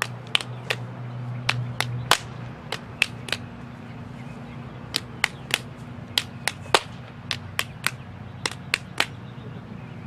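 Fists pounded into open palms to count off rounds of rock, paper, scissors: sharp slaps in quick sets of three, about a third of a second apart, repeated round after round. A low steady hum runs underneath.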